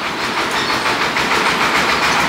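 Steady noise of a passing vehicle, growing slightly louder.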